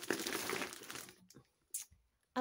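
Plastic packaging crinkling and rustling as items are dug out of a box, fading away after about a second, with one brief rustle near the end.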